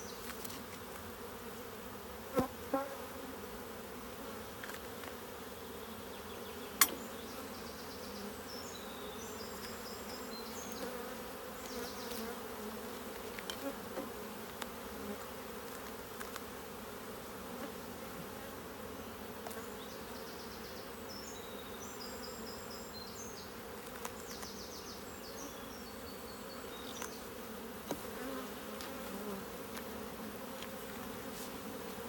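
Honeybee colony buzzing with a steady low hum from the opened hive as its frames are worked. A few sharp knocks cut through it: two close together a couple of seconds in, and a louder one about seven seconds in.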